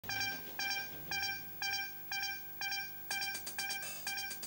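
Electronic countdown beeps: a short pitched tone that fades after each strike, repeating about twice a second, quickening and brightening in the last second.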